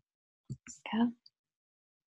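A woman's voice saying a single short, soft "yeah"; otherwise silence.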